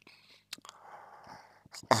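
A man's mouth clicks and a faint, breathy intake of breath in a pause between his phrases. His speech starts again near the end.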